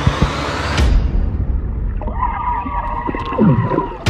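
A phone's microphone dunked in pool water. About a second in, the sound turns muffled and low, with a bubbling rumble, and some dull pitched sounds come through in the second half. It breaks back into open air with a splash at the end.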